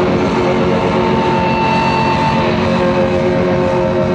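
Live rock band playing loudly, with distorted electric guitars holding long sustained notes over a dense wash of band sound. One higher note is held for about a second and a half partway through.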